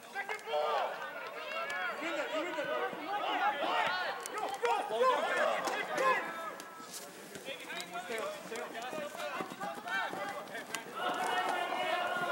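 Several voices shouting and calling out at once, overlapping throughout, during an outdoor soccer match.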